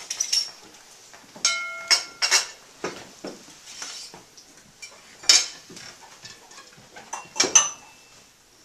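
Glassware and silver tableware clinking on a table in a handful of sharp clinks. One about one and a half seconds in rings on briefly; others come in a cluster just after it, around the middle and near the end.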